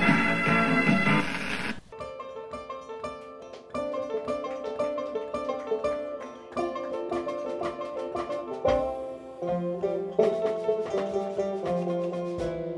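A short bright logo jingle, then from about two seconds in a live banjo picking a fast run of single notes. Lower plucked notes join it about nine seconds in.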